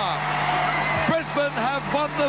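Basketball arena crowd cheering, with many high-pitched excited shouts and whoops rising and falling over the roar, and a steady low hum underneath.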